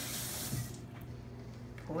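A steady hiss that stops about two-thirds of a second in, leaving a low steady hum.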